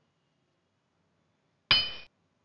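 Near silence, then near the end a single bright, bell-like chime that starts suddenly and fades quickly: a quiz sound effect marking the reveal of the correct answer.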